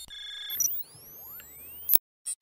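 Synthesized sci-fi interface sound effects: a high electronic beep chord, then sweeping tones gliding up and down, ending in a sharp click just before the end.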